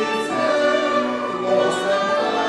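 A group of voices singing a hymn together, with instruments accompanying, in long held notes that change every half second or so.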